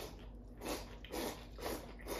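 Tsukemen noodles slurped from a bowl held to the mouth, in a run of quick noisy sucks about half a second apart.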